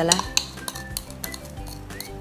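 Metal spoon clinking and scraping against the inside of a drinking glass as a thick, jelly-like mixture is scooped out, a string of light clinks over background music.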